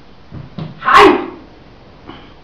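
A martial artist's short, forceful exhalation, sharp like a sneeze and the loudest sound, about a second in, after two softer sounds.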